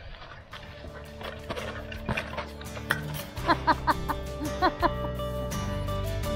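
Background music coming in and growing louder: steady held tones with a run of short, bright notes a little past the middle.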